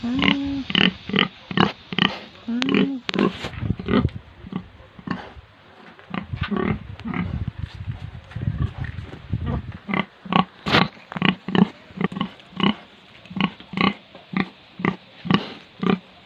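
A sow (breeding pig) grunting in a long series of short grunts, sparser in the middle and settling into a steady run of about two to three grunts a second in the second half.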